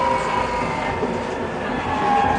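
Electric tram running along its track: a steady whine over the rumble and noise of the running gear.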